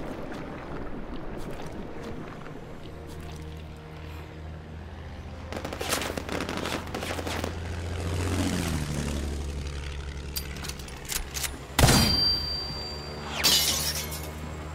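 Dramatic background music under air-raid sound effects: a diving warplane's engine with a falling pitch about eight seconds in, then sharp gunfire-like hits and a heavy impact, loudest near twelve seconds. Near the end, a bright crash like breaking glass.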